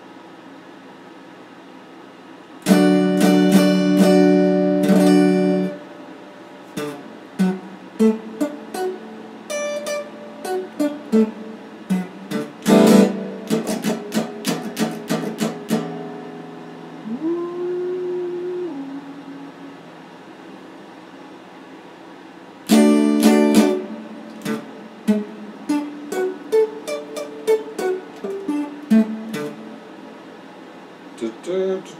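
Solid-body electric guitar being played: after a couple of seconds of steady hiss, loud strummed chords, then single picked notes and short phrases with pauses, including one note bent up and held. Another short burst of strummed chords comes about two-thirds of the way through.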